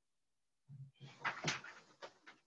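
A few faint knocks and rustles of handling noise close to a computer microphone, lasting about a second, after a short silence.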